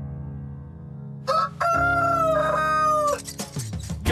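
Soft, sleepy music, then about a second in a loud rooster crow: a short first note followed by one long held call that breaks off near the end.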